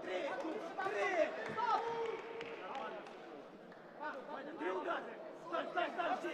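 Voices calling out and talking in a large hall, with a lull in the middle and a few faint knocks.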